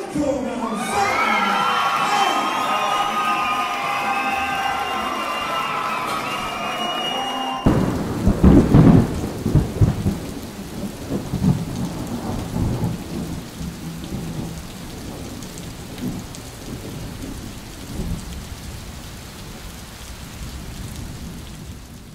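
A hall full of voices for the first few seconds, then an abrupt switch to a loud, low rumbling crash followed by a steady rain-like hiss that slowly fades: a thunder-and-rain sound effect.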